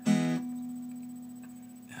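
Steel-string acoustic guitar: an open E chord strummed once just as it begins, then left to ring and slowly fade away.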